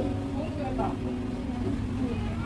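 Indistinct voices talking over a steady low hum.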